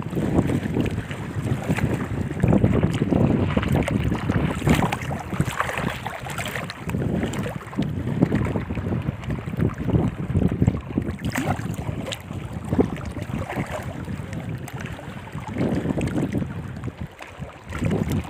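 Shallow water sloshing and lapping as a hand moves in it over stones, with gusts of wind buffeting the microphone.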